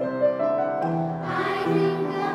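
Children's choir singing held notes, accompanied on an upright piano.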